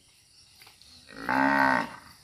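A cow mooing once, a short low call of under a second, about a second in.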